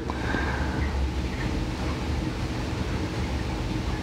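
Steady low rumble with a hum and no change.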